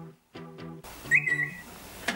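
A phone's alert tune repeating: a short looped melody of plucked notes with a rising whistle slide about a second in, as the phone goes off to wake its owner. Rustling of bedding starts just before halfway.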